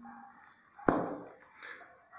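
A single sharp knock about a second in, then a brief rustle: a paperback book being handled and lowered in front of a phone microphone.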